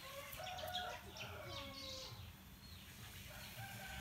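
Hill mynas giving faint, short chirps and whistled glides, with a few clicks.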